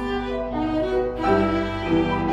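Violin playing a classical piece live, bowing sustained notes that change pitch every half second or so.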